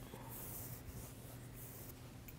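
Faint scratchy swishes of a paintbrush stroking white paint across canvas, over a steady low hum.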